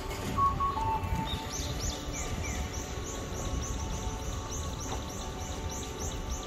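Short high chirps repeated at an even pace, about three a second, starting a second or two in, over steady street noise with a low traffic rumble. A few short beeps sound in the first second.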